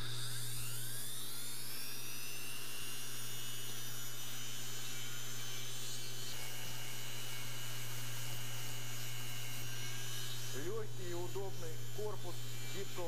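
Mini drill (rotary tool) driving a flexible shaft, switched on and spinning up with a rising whine over the first two seconds, then running at a steady high whine at its set speed.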